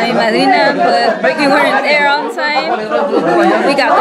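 Many people talking at once: overlapping conversation of a crowd of voices, with a woman's voice close by.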